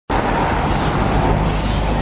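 City bus driving past close by: a loud, steady rumble of engine and road noise with some high hiss.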